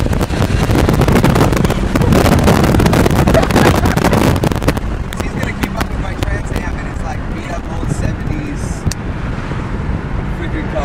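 Wind rushing and buffeting on the microphone inside a moving Pontiac Trans Am, over engine and road noise. It is loudest for about the first five seconds, then eases to a steadier, quieter drive noise.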